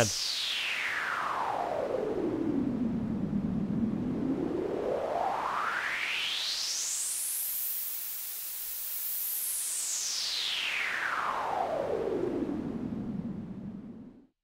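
Synthesized pink noise through a resonant filter whose bright band sweeps slowly and smoothly: down low by about three seconds in, up to a high hiss around the middle, and back down low near the end, where the noise fades out.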